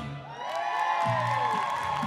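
Audience cheering, with several long rising-and-falling whoops over light applause.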